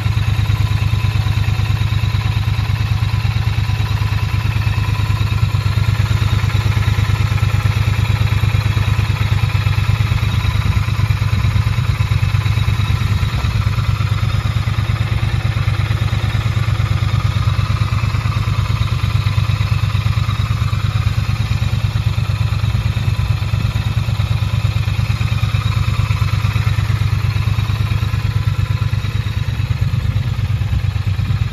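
Triumph Bonneville T100's parallel-twin engine idling steadily, with no revving.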